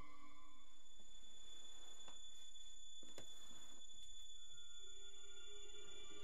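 Quiet, tense stretch of a horror film's soundtrack: a thin steady high tone over faint hiss, with a few soft ticks. A low sustained drone of the score creeps back in near the end.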